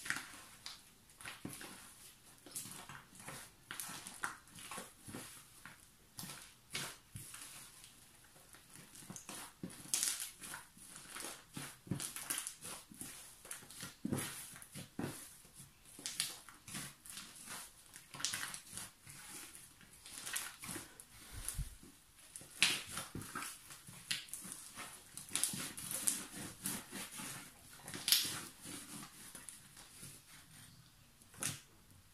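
A giant fluffy slime thickened with shaving foam being kneaded and squeezed by hand, giving quiet, irregular crackling pops and squelches. It crackles a lot.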